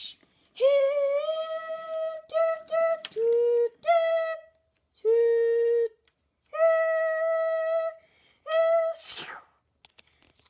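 A person's voice imitating a steam locomotive whistle: a run of held whistle-like notes on two pitches, mostly the higher one, with two lower notes in the middle, the longest held about one and a half seconds. Near the end comes a loud hissing "shh" of escaping steam, voiced for the toy engine's whistle cap shooting off.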